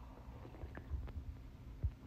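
Soft sips and swallows of noodle-soup broth drunk straight from a bowl held to the mouth, with low dull thumps and a few small clicks; the loudest thump comes near the end.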